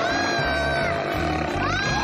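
Cartoon dinosaur roar and a child's high scream over background music with a steady low beat. Two high cries, the first dropping away about a second in, the second rising near the end and holding.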